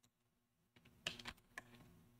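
A few faint computer keyboard key presses, clicking in a short cluster about a second in and once more soon after, as a selected block of code is deleted.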